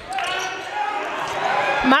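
Game sound in a gym: a basketball being dribbled on the hardwood court, with voices in the background.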